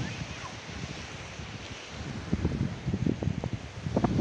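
Wind buffeting a phone microphone in irregular gusts, strongest in the low range.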